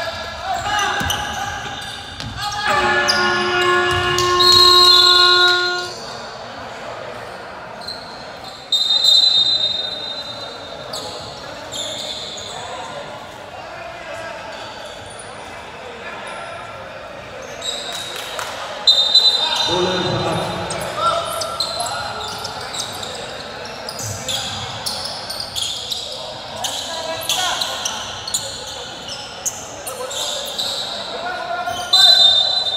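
A basketball game in an echoing gym. A game buzzer sounds one steady horn-like tone for about three seconds, a few seconds in. Around it are the ball bouncing on the hardwood, short high-pitched tones and voices.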